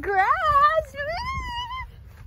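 A toddler vocalizing without words: two drawn-out, high-pitched calls that waver and rise in pitch, the second one stopping shortly before the end.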